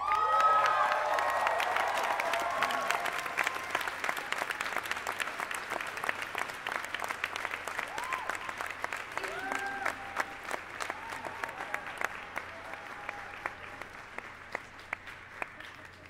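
Concert audience applauding with whoops and cheers, loudest at the start, thinning to scattered claps and fading out near the end.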